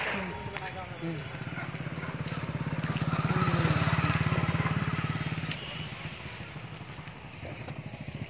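Motorcycle engine running as it passes close by, growing louder to a peak about halfway through and then fading away.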